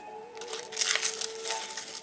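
Dry, papery cape gooseberry husks crinkling and tearing as fingers pull the berries out, loudest about a second in.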